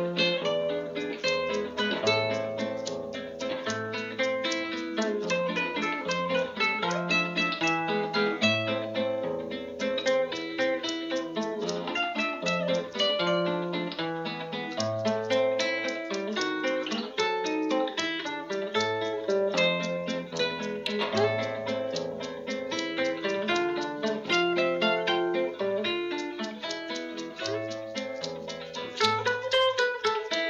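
Instrumental acoustic guitar music: a quick plucked melody runs over a repeating bass line.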